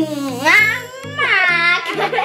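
A child's high-pitched voice in two long drawn-out cries that glide up and down in pitch, over background music with a steady low bass line.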